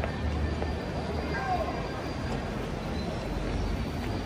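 Street ambience: faint voices of passers-by over a steady low rumble.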